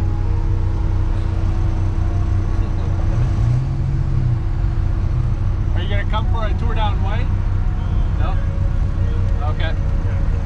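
1995 Dodge Viper RT/10's V10 engine running at low speed, with a brief rise and fall in pitch about three seconds in.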